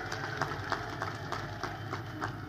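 A steady low hum with scattered faint clicks.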